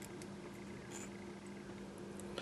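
Quiet room tone with a faint steady low hum and a few faint small ticks.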